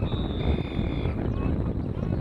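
Referee's whistle blown once, a steady shrill tone lasting about a second, blowing the play dead after a tackle, over heavy wind rumble on the microphone.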